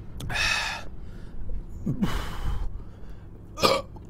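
A man's close-miked breathing and vocal noises: a loud breath about half a second in, another around two seconds, and a short sharp voiced gasp near the end.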